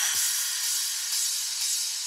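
Background electronic dance music in a breakdown: the drums stop at the start and only a steady high hissing wash remains, with no bass.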